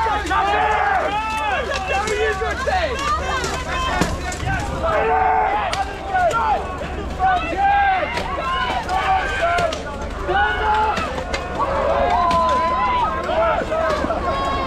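Many voices shouting and yelling over an armoured melee fight, with a few sharp clanks of steel weapons striking plate armour.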